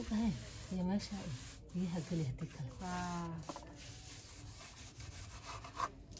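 Faint rubbing and scraping of a hand pressing ceramic tiles into wet cement, with a few short clicks, under brief bits of voice in the first half.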